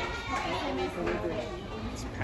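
Background chatter of several people talking at once.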